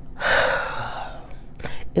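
A person's sharp, audible breath: a noisy rush of air lasting about a second, followed by a few faint mouth clicks.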